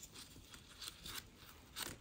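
Faint rustling and crackling of gauze and plastic wrapper handled by gloved hands, with a few soft clicks and a slightly louder rustle near the end.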